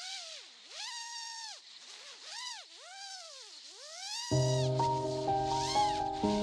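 FPV quadcopter's brushless motors whining, the pitch dipping and rising back about four times as the throttle changes. Music with a steady bass line comes in about four seconds in.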